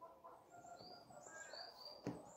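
Faint chirping of small birds: several short, high chirps over near-quiet background.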